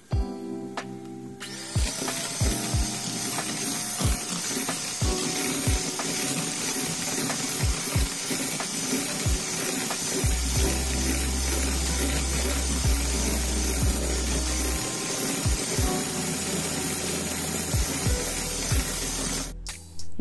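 Electric hand mixer running, its twin beaters whipping eggs and sugar into a thick, pale foam for cake batter; it starts about a second and a half in and cuts off just before the end. Background music plays underneath.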